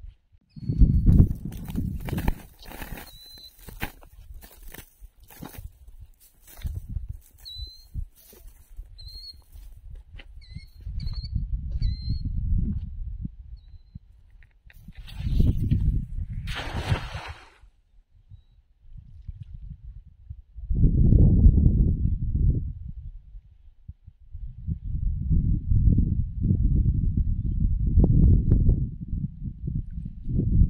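Wind buffeting the microphone in repeated low gusts, loudest in the second half, while a cast net is handled on a stony shore: clicks and rustles of the net and its weights in the first several seconds, and a brief swish and splash about 15–17 seconds in as the net is thrown onto the water. A few short high bird chirps come early on.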